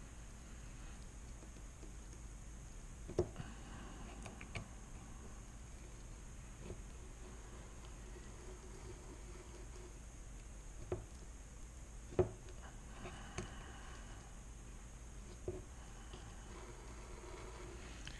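X-Acto knife cutting the gel sealant away from the inside edge of a Dodge JTEC engine computer's aluminum case: faint scraping with a few sharp clicks of the blade against the metal case.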